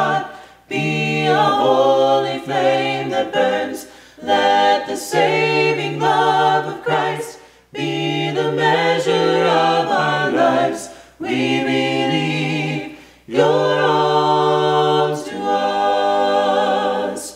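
Small mixed group of two men and two women singing a worship song a cappella in four-part harmony, in sung phrases of a few seconds with short breaks for breath between them.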